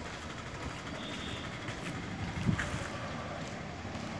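Steady outdoor roadside background noise with no clear single source, and a brief low knock about two and a half seconds in.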